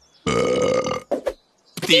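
A cartoon seagull character giving one loud, drawn-out burp lasting under a second, with a couple of short gulping sounds just after it.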